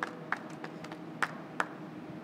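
Carom billiard balls clicking against each other as they roll to a stop after a three-cushion shot: four sharp clicks spread over two seconds.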